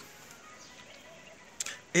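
A pause in a man's speech: faint, steady background hiss, then a short click, like a lip smack or breath, a little before he starts speaking again near the end.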